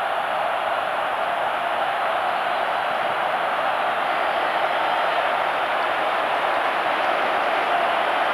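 Football stadium crowd: a steady, dense noise of thousands of fans, heard through an old TV broadcast.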